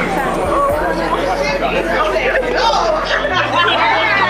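Indistinct chatter of voices talking, with a low steady hum underneath that steps up in pitch about three seconds in.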